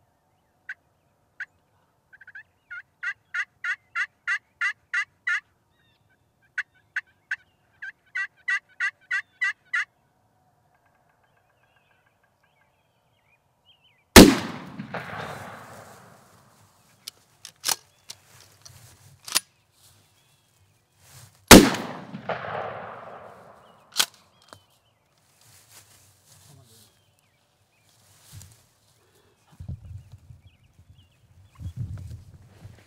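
Wild turkey yelping, two runs of about ten evenly spaced notes each. Then two loud shotgun blasts about seven seconds apart, each echoing off across the field, with a few faint clicks between and after them.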